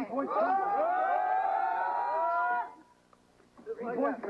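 Several men's voices yelling together in one long drawn-out shout that lasts about two and a half seconds and then stops. A man's voice starts again near the end.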